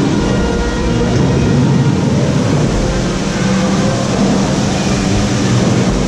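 Steady rumbling noise heard on board a water dark ride: the ride boat moving along its channel amid the ride's machinery, with a few low held tones underneath.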